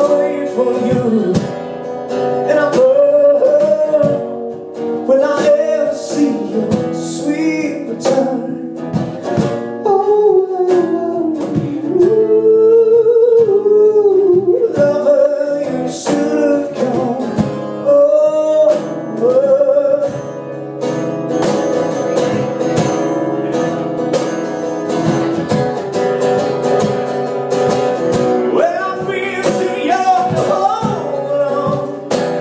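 Live acoustic duo: a man singing long, gliding notes over a strummed acoustic guitar, with a cajón beating time.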